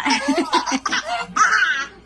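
Baby laughing in short, choppy bursts.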